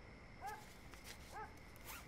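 Two short, faint yelps from a dog, about a second apart, with light rustling.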